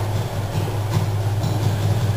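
Steady low background hum, with soft strokes of a marker drawing lines on a whiteboard.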